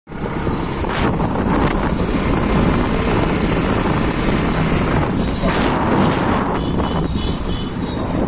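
Loud, steady rumbling rush of wind buffeting the phone's microphone outdoors, with vehicle noise in it.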